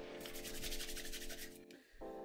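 Hands rubbed briskly together, a quick run of dry swishing strokes that stops about a second and a half in, over a soft held musical chord.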